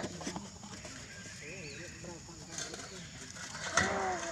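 Macaques clattering an upturned metal basin, with a couple of sharp knocks at the start, then soft warbling coo calls in the middle and a louder falling call near the end.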